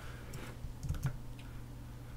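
A few key presses on a Mac computer keyboard, short sharp clicks bunched around the middle, as Command-Tab is pressed to switch apps. A steady low hum runs underneath.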